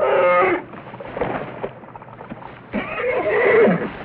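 A bear roaring twice: a short roar right at the start, then a longer one about three seconds in that drops in pitch as it ends.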